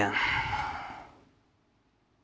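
A man's long, breathy sigh right after speaking, fading out about a second in.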